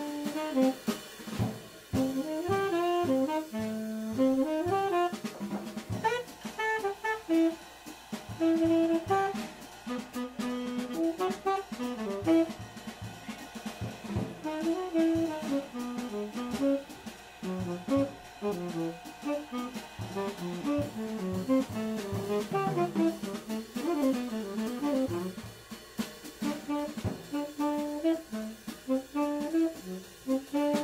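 Jazz quartet playing live: a tenor saxophone moving quickly from note to note, with electric guitar, double bass and drum kit.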